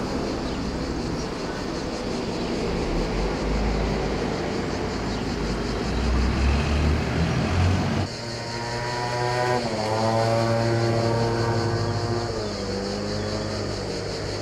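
Outdoor rumble of wind and distant traffic. About halfway through, this gives way to one engine running with a clear pitch that drops in two steps, consistent with a motor vehicle shifting up through its gears.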